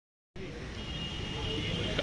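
Outdoor background ambience: a steady low rumble with faint murmuring voices, starting abruptly about a third of a second in.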